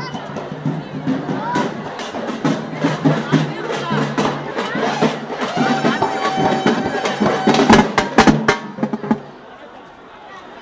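Procession drums being beaten over a steady droning tone, with a crowd of voices around them. The drumming is heaviest a little before the end, then the music stops about nine seconds in.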